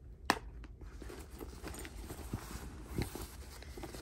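A hand rummaging inside a leather tote bag: soft rustling and a few light knocks, with one sharp click just after the start.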